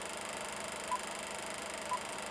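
Steady buzzing hum with a short high beep about once a second, a sound effect between two narrated segments.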